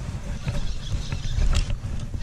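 A fishing reel being cranked against a hooked fish that is fouled in weeds, with a few light clicks over a low rumble of handling or wind noise.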